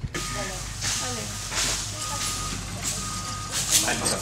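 A vehicle's reversing alarm beeping about once a second, each beep a single steady tone, over a low engine hum, with faint voices in the background.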